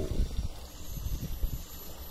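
Wind buffeting the microphone, a low uneven rumble with a few dull knocks from the camera being handled.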